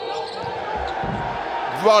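Court sound from a basketball game in an arena: steady hall noise with a basketball bouncing on the hardwood floor.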